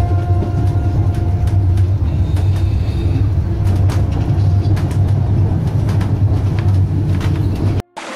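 Moving train: a steady low rumble with occasional clicks, cutting off suddenly just before the end.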